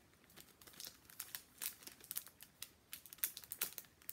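Clear plastic cellophane wrapping crinkling as it is handled by hand, in quick irregular crackles.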